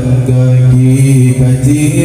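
A man chanting an Acehnese religious verse (syair) into a microphone, drawing out long held notes in a melismatic, mantra-like style.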